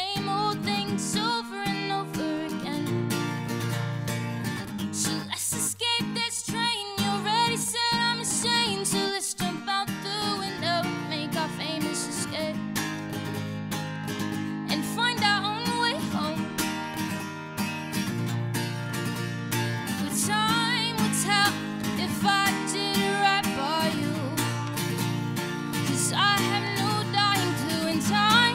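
A woman singing live while playing an acoustic guitar. Her sung phrases come and go, with a wavering pitch on held notes, over the steady guitar accompaniment.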